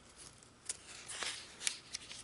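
Glossy magazine page rustling as a hand grips and lifts its edge to turn it, with a few sharp paper crackles.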